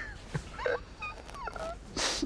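A man's soft laughter: a few short, high, gliding vocal sounds that fall in pitch, ending in a sharp breath.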